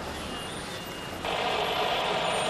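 Street traffic noise from idling cars and a bus, a steady rush that turns louder and hissier a little past halfway.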